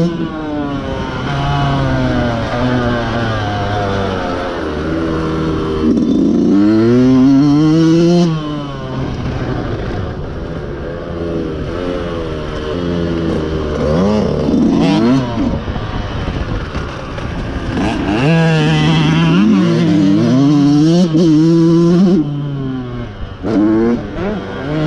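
Dirt bike engine running hard on a dirt track, heard from on the bike. Its pitch climbs and falls again and again, with the strongest climbs about a third of the way in and again in the last third.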